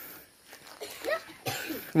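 A few short coughs from people out of breath after exertion, the loudest near the end.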